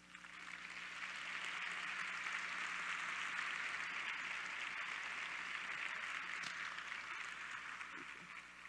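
Audience applauding, swelling over the first second and then holding steady.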